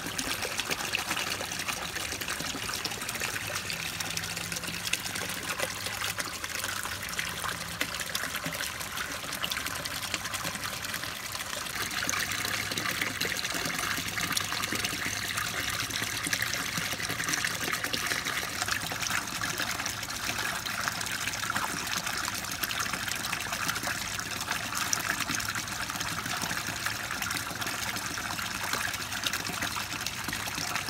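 Koi pond water trickling steadily, growing a little louder about twelve seconds in.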